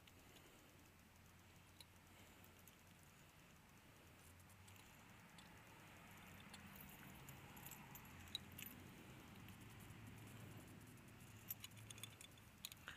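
Faint small clicks and light metal rattles of a dog-proof raccoon trap being handled as sausage bait is pushed into its tube, with a few sharper clicks near the end.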